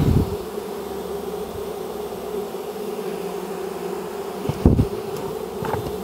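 A dense mass of honeybees buzzing in a steady hum, stirred up from being shaken off comb at an open hive. A dull knock sounds about three-quarters of the way through.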